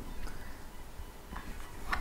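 Quiet room tone with a few faint handling taps from an electric violin being held and touched, and a short breath in near the end.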